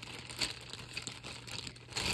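Light rustling and scattered soft clicks of markers and paper being handled while searching for a marker; the sharpest click comes about half a second in.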